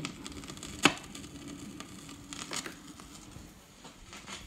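Old vinyl record turning in its lead-in groove on a turntable: faint scratchy surface noise with scattered crackles, and one sharp click about a second in.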